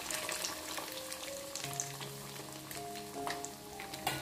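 Breaded vegetable cutlet deep-frying in hot oil in a cast-iron kadai: steady sizzling full of small crackles as the oil bubbles hard around the freshly added cutlet. Background music plays along with it.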